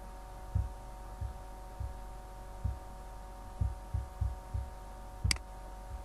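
Steady electrical hum in the recording, with a series of soft low thumps and one sharp click a little after five seconds in.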